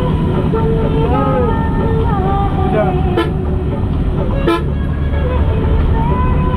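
Steady low road and engine rumble of a moving vehicle on a highway. Pitched, wavering tones sound over it, and there are two sharp clicks about three and four and a half seconds in.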